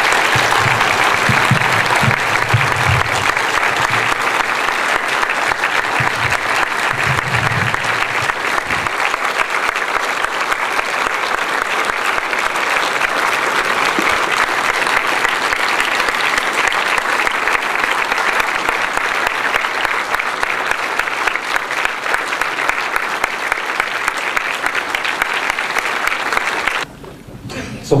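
Audience applauding, long and sustained, with some voices mixed in during the first few seconds; it stops suddenly near the end.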